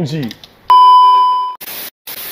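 Loud steady test-tone beep for about a second, the tone of a TV colour-bar 'no signal' screen, followed by two short bursts of TV static hiss.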